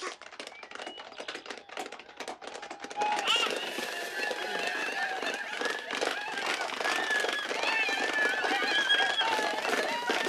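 Horses galloping, hooves drumming quickly. About three seconds in, many voices start shouting and whooping over the hoofbeats and grow louder.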